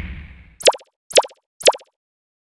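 A whooshing swell fading out, then three short, pitched pop sound effects about half a second apart, one as each of three on-screen labels pops in.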